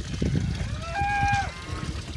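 A cow mooing once, about a second in: a short, fairly high-pitched call that rises briefly, then holds one pitch before stopping, over a steady low rumble.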